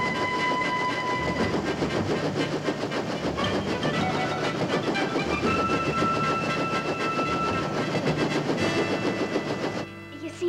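A small bubble-canopy helicopter running on the ground with its main rotor turning: a rapid, steady chopping and engine clatter. A few held high tones sound over it, changing pitch a little after the start and again about halfway through.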